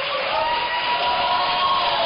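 Studio audience applauding and cheering, with a few long held shouts over the clapping.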